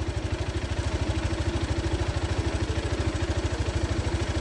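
A vehicle engine idling close by, a steady, fast, even low throb.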